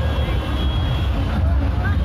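Steady low rumble of a heavy truck under crowd chatter and scattered shouts.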